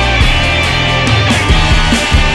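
Rock band music: electric guitars with bass and a steady drum beat.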